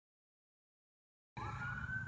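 Dead silence for just over a second, then a sudden start of faint outdoor background noise carrying a steady high whine that falls slightly in pitch.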